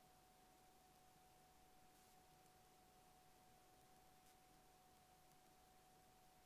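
Near silence, with only a faint steady high tone running underneath.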